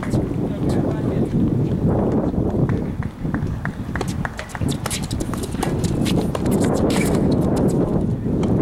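Tennis rackets hitting the ball during a doubles rally: a series of short sharp pops, most of them in the second half, over a steady low rumble and indistinct voices.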